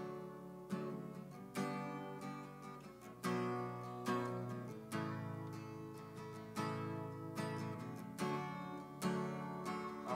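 Acoustic guitar strumming chords in a steady rhythm, about one strum every 0.8 seconds. This is the instrumental introduction to a worship song, before the singing comes in. It starts suddenly out of near silence.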